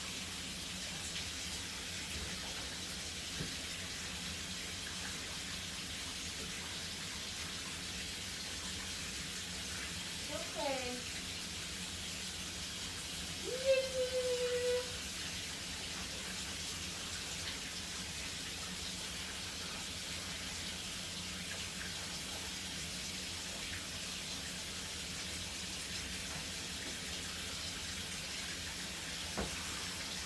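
Water running steadily into a bathtub while a puppy is being rinsed. About ten seconds in comes a short falling cry, and at about fourteen seconds a louder, held high whine.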